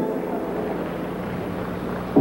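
A break in the skating music: steady, low arena noise with the hiss of an old broadcast recording. The music cuts off right at the start.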